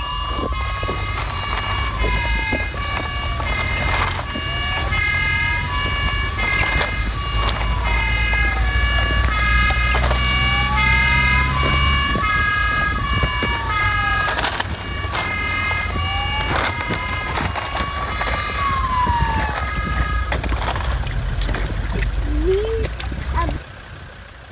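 Emergency-vehicle sirens: a wail rising and falling about every four seconds, sounding together with a rapidly alternating two-tone horn, over a low rumble. The sirens fade out a few seconds before the end.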